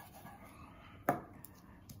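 A chef's knife cutting through raw beef rib, with one sharp knock as the blade comes down onto the plastic cutting board about a second in.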